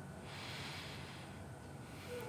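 A faint deep breath drawn in through the nose, swelling and fading over about a second and a half.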